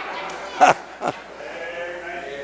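A man laughing: a few short laughs with no words.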